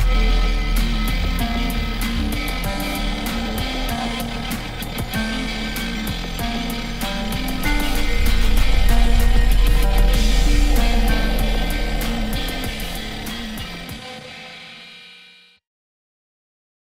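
End-credits music with a deep bass and busy percussion. It swells about eight seconds in, then fades out and stops about a second and a half before the end.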